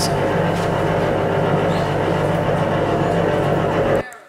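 Recorded paper shredder running steadily, a constant hum with an even rushing noise over it, played back over loudspeakers; it cuts off suddenly at the end.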